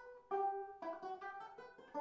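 Solo banjo played classic fingerstyle: a slow melody of single plucked notes, each ringing and fading, with a stronger chord struck about a third of a second in.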